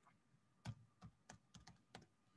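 Computer keyboard typing: about six quick, faint keystrokes, starting a little over half a second in, as a six-letter word is typed.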